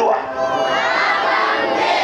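A large crowd of people speaking aloud together, many voices overlapping as they repeat a prayer line in unison.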